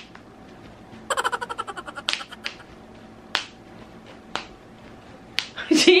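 Magnetic snap closures on a baby romper clicking shut: a quick run of small clicks about a second in, then single sharp clicks every second or so.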